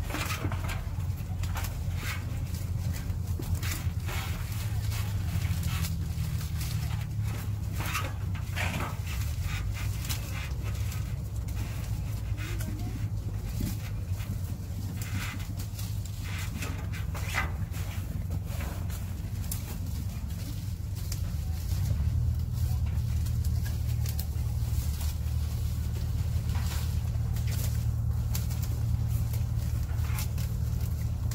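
Apple tree leaves and branches rustling, with scattered short snaps and clicks, as gala apples are picked by hand from a ladder, over a steady low rumble.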